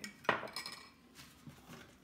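A metal spoon clinking against a glass cup: one sharp clink about a third of a second in, then a few faint taps.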